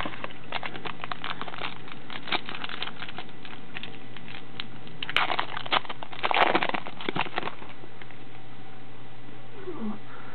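Foil trading-card pack wrapper being torn open and crinkled in bursts about five to seven and a half seconds in, after a run of light clicks and rustles from the pack and cards being handled.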